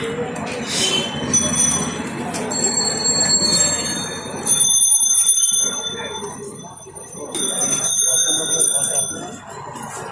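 Busy street ambience: background voices and chatter, with high-pitched bells ringing in several stretches from a few seconds in.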